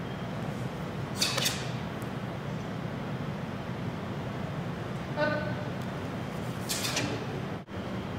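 A voice gives short pitched calls about five seconds apart, and each call is followed about a second and a half later by a brief noisy swish as the taekwondo students move together in their uniforms. A steady low hum lies under it all.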